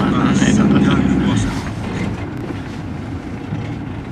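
A car's engine and road noise heard from inside the cabin while driving at low speed. A steady low engine hum drops off about a second and a half in as the car eases off.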